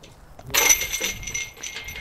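A metal disc golf basket struck once about half a second in, giving a single clang that rings on and fades over more than a second.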